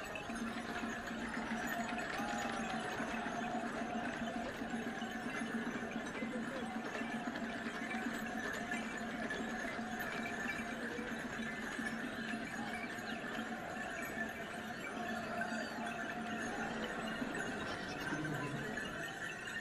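Steady noise of a large crowd of spectators in a grandstand, with a steady low tone running under it until near the end. No musket volley is heard.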